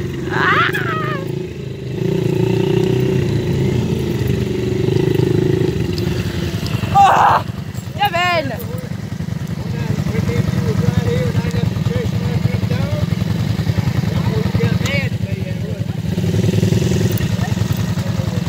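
Four-wheeler (ATV) engine running steadily at low speed. A few brief shouts or calls break in, the loudest about seven seconds in.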